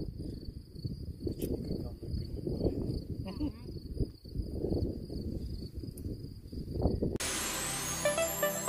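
Wind buffeting the microphone in low, uneven gusts, with a thin steady high-pitched insect drone underneath. About seven seconds in, electronic music cuts in abruptly.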